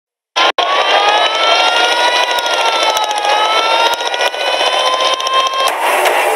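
A loud, high horn blast held for about five seconds, its pitch slowly rising and falling, over a noisy background with a few sharp clicks; it cuts off just before the end.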